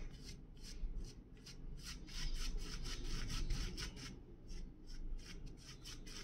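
Shaving brush working foam lather over a stubbled cheek and chin: a quick, repeated bristly swishing, several short strokes a second.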